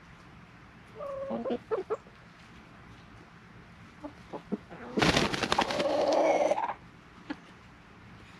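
Rooster's danger alarm call, warning the flock of potential danger: a few short clucking notes about a second in, then a loud, harsh drawn-out call lasting about a second and a half from about five seconds in.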